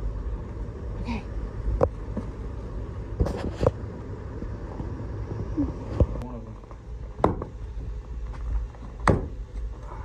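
Splitting maul striking a tough, unsplit log, several sharp knocks a second or two apart, the loudest two near the end, over a steady low rumble.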